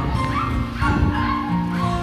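Instrumental karaoke backing track of a Tagalog ballad playing between sung lines, with no voice: sustained accompaniment notes and a few short gliding notes above them.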